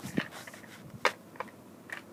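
Handling noise: a few sharp clicks and taps of small plastic toys and props being moved by hand, the sharpest just after the start and about a second in.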